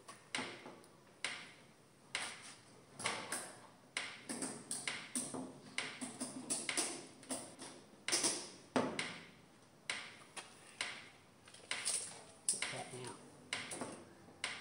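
A string of sharp clicks and metallic taps, very roughly one a second with quicker clusters in the middle.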